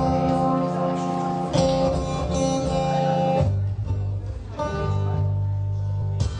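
Acoustic guitar played live through a PA, chords ringing with sustain; about halfway through the playing moves down to lower bass notes.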